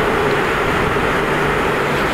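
Steady rush of wind and road noise from a Yamaha MT-09 motorcycle cruising at speed through a road tunnel, picked up by a helmet-mounted camera. The engine's steady drone runs underneath.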